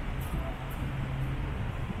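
Outdoor city ambience: a steady low rumble of traffic, with a brief low engine-like hum about halfway through.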